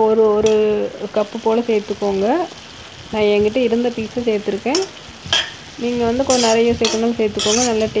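Steel spoon stirring and scraping vegetable masala around an iron kadai: strokes of a wavering, squealing scrape over the sizzle of frying. There are short pauses in the stirring about two and a half seconds and five seconds in.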